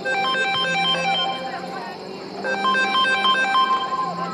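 Mobile phone ringtone: a quick run of high electronic notes in repeating phrases, signalling an incoming call. It plays at the start, pauses, and begins again about two and a half seconds in.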